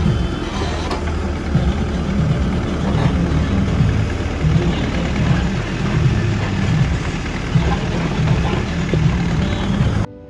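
Terex TLB740S backhoe loader's diesel engine running steadily under load as the backhoe arm digs into a manure-and-straw heap and lifts the full bucket to tip it into a trolley.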